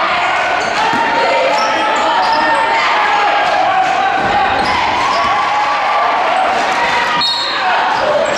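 Live basketball game sound in a gymnasium: a basketball dribbled on the hardwood court under a steady mix of players' and spectators' voices, with a brief high squeak or whistle near the end.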